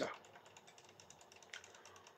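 Near silence: faint room tone with faint, closely spaced small clicks, and one slightly stronger tick about one and a half seconds in.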